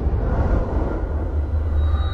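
A low, steady cinematic rumble: a deep bass drone from trailer sound design, with a noisy haze above it and no clear melody.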